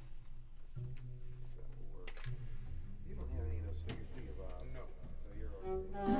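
Studio rehearsal: instruments hold short, low sustained notes while voices murmur in between.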